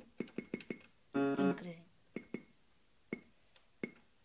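A Casio MA-150 electronic keyboard: its volume-down button is pressed over and over with short plastic clicks, and a single held note sounds from the keyboard about a second in.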